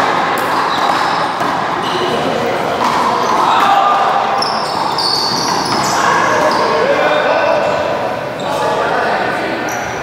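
Handball being played on an indoor court: the rubber ball slapping the wall and floor, amid steady voices echoing in the large hall.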